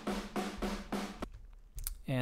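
Room-mic channel of a sampled drum kit in Superior Drummer, heavy with snare and high-passed with a top-end boost, playing quick even drum hits about four a second that stop about a second and a quarter in. A single short click follows near the end.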